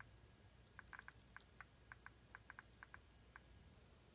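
Geiger counter clicking faintly and irregularly, three or four counts a second, as americium-241 smoke-detector sources in a sealed glass ampule are held against its Geiger-Müller tube on the most sensitive setting. The count is a few times above background.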